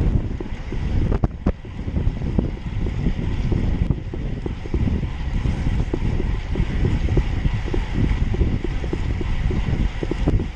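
Wind buffeting the microphone of a camera riding on a road bike at speed: a loud, fluttering rush weighted low, with a couple of sharp knocks a little over a second in.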